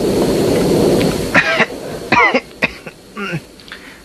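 A man coughing and clearing his throat in several short, rough bursts. A heavy rumbling noise that fills the start dies away about a second in, just before the coughing begins.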